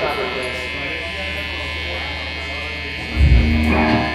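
Guitar amplifiers humming and buzzing on stage between songs, under faint crowd chatter. About three seconds in, a loud low bass guitar note sounds.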